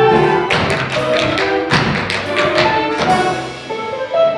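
Live theatre band playing music from the musical, overlaid with a run of sharp taps, about four a second, that ease off near the end.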